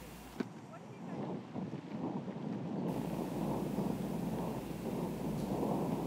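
Wind buffeting the microphone on an outdoor course: a low rushing noise that grows louder after about a second. There is one short click near the start.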